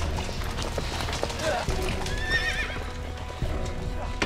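Horses galloping on a dirt track, with a quick run of hoofbeats, under dramatic background music. A horse whinnies with a wavering call about two seconds in.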